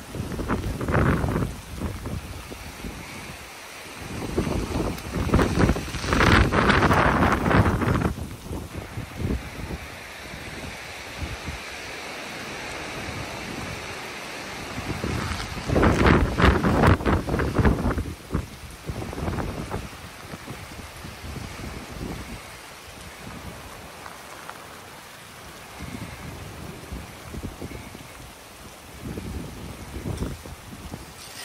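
Strong wind gusting in three loud surges of a few seconds each, over a steady hiss of rain and sleet.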